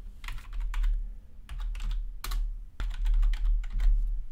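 Typing on a computer keyboard: irregular keystrokes, with a low rumble underneath.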